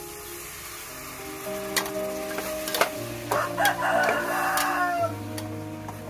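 A rooster crows once, starting about three seconds in and dropping in pitch at the end, over steady background music.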